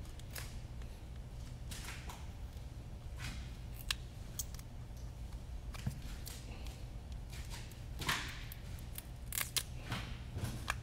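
A small clear plastic camera box being opened and handled: scattered light clicks and rustles of plastic. A steady low hum runs underneath.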